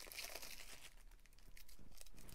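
Faint crinkling of a thin plastic bag being opened and handled as a small item is slipped out of it. A few crinkles come mostly in the first half second, then it goes nearly quiet before a few more light rustles near the end.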